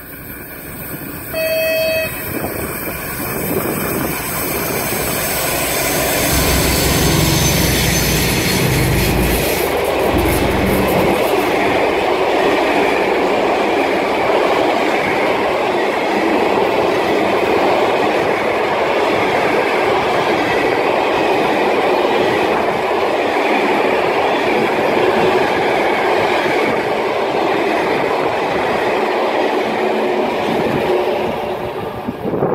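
A diesel freight locomotive sounds a short horn blast about a second and a half in, then passes close with its engine running loud and low for several seconds. After it comes a long train of empty flat wagons, their wheels rolling and clattering steadily on the rails.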